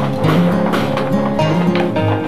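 Background music: a guitar piece with plucked notes and a bass line stepping from note to note.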